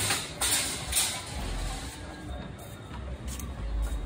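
Plastic chairs knocking and clattering against each other as they are carried and lifted, with a few sharp clacks in the first second or so and lighter knocks after, over a low rumble.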